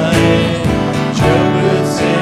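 Yamaha acoustic guitar strummed in a steady rhythm, about two strokes a second, with a man singing over it.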